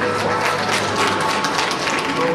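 Audience applauding, a dense patter of many hands, over steady background music.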